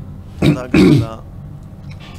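A man clearing his throat: two quick sounds within the first second, the second sliding down in pitch.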